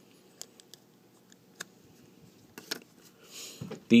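A few faint, scattered clicks of small hard-plastic toy parts being handled, as the hinged panels on a plastic shield accessory are flipped out.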